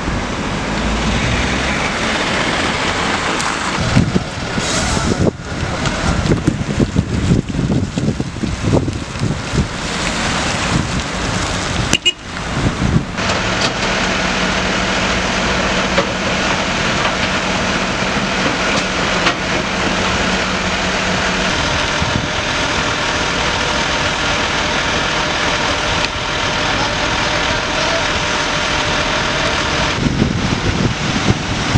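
Flatbed tow truck running while a car is winched up its tilted bed: a steady engine and hydraulic drone with a steady hum that sets in just after a cut and stops about two-thirds of the way through. Before the cut, irregular gusts of wind buffet the microphone.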